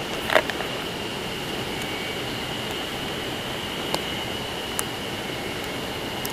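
Steady outdoor hiss with a thin, constant high-pitched tone running through it. There is a brief louder sound just after the start, then a few small sharp clicks from a compact digital camera being handled.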